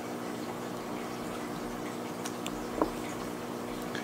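Lamy AL-Star medium-nib fountain pen writing on paper: the nib's faint scratching, with a few light ticks about two and a half seconds in, over a steady background hum.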